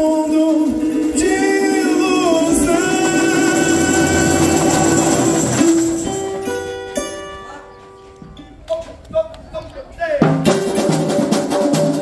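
Live samba: a voice singing over a strummed cavaquinho through the PA, the song winding down about six seconds in. After a few quiet seconds with scattered notes, the samba drum section comes in loudly about ten seconds in.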